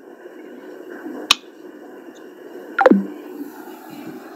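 Low hiss of an internet voice-call line, broken by one sharp click about a second in and a short falling chirp near three seconds.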